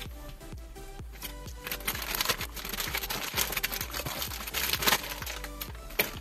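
Plastic courier mailer bag crinkling and rustling as it is torn open and a taped box is pulled out, loudest from about a second and a half in, over steady background music.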